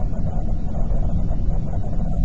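Steady low road and engine noise heard from inside a moving car.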